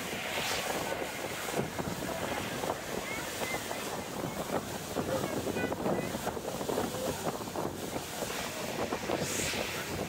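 Wind buffeting the microphone over the steady wash of river water.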